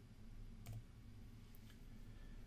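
Near silence: a low steady hum of room tone with a few faint clicks, one about two-thirds of a second in and two fainter ones about a second later.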